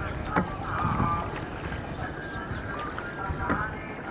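Wooden rowboat being rowed: the oar knocks twice in its rowlock, about three seconds apart, over a steady wash of water and distant voices.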